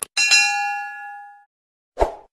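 Subscribe-animation sound effect: a mouse click, then a bright bell ding that rings and fades away over about a second. A short thump comes at the very end as the next graphic appears.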